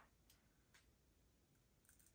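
Near silence: the sound drops out almost completely, leaving only a few very faint ticks.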